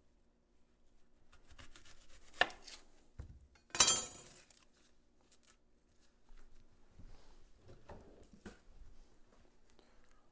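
Chef's knife cutting the tip off an onion on a wooden cutting board: a sharp tap about two and a half seconds in and a louder knock of the knife just under four seconds in, then soft handling of the onion.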